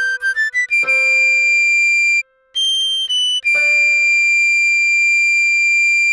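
A recorder melody over soft piano chords: a quick run of short notes, one long note, a brief break, two short notes, then a long held note.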